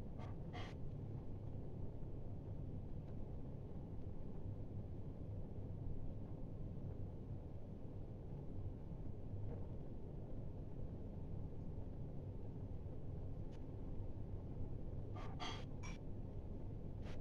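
Steady low hum of an empty room, with a few faint clicks just after the start and a small cluster of clicks near the end.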